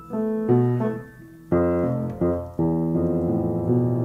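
Keyboard music: jazz piano chords drawn from the Japanese In-sen pentatonic scale, struck several times (about half a second in, at a second and a half, then twice more just after two seconds) and left to ring.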